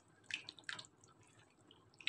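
Faint wet squelches of a silicone spatula stirring thick, flour-thickened cream sauce in a pan, two small ones in the first second, then almost nothing.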